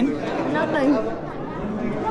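Several people chattering at once in a large room, with no one voice clearly to the fore.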